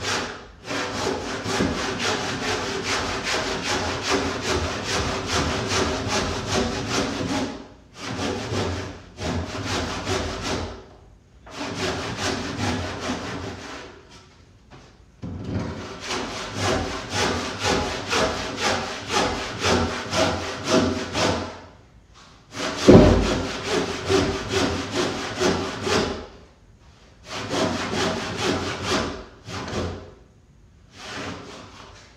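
Hand saw cutting along the grain down into the end of a 4x4 timber rafter, in runs of back-and-forth strokes at about two a second with short pauses between runs. A single low thump comes about 23 seconds in.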